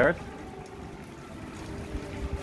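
Air-raid siren sounding faintly as a steady tone under a hiss of background noise: the warning of an air alert.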